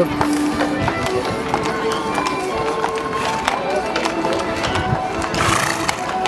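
Music with held melody notes, over the clip-clop of a Belgian draft horse's hooves as it walks close by on the road pulling a cart, with voices around.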